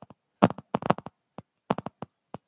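Microphone crackling: an irregular run of short pops and snaps with dead silence between them, the signal cutting in and out. It is static on the microphone, which seems to come when the wearer moves.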